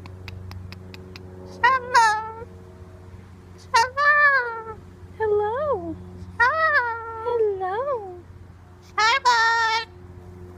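Moluccan cockatoo giving a series of about seven short, word-like calls that rise and fall in pitch, over a steady low hum.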